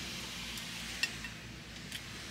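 Faint handling sounds as a water bottle is picked up and raised, with one light click about a second in, over low room hiss.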